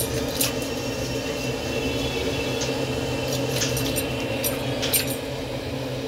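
A steady low hum, like a motor running, with a few short light clicks scattered through it.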